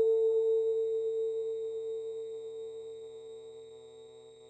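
The ringing note of a struck bell dying away slowly, one strong tone with fainter overtones, fading almost to nothing near the end.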